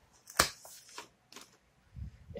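Disc-bound paper notebook being handled and flipped open on a table: one sharp snap of the cover about half a second in, then a couple of lighter taps and paper rustles.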